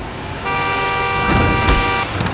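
Car horn sounding one long, steady blast from about half a second in, while a car drives past close by with a rising rumble that peaks near the end.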